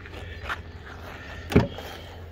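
A faint click, then a single loud clunk about a second and a half in: the door latch of a 1999 Toyota Camry releasing as the door is pulled open.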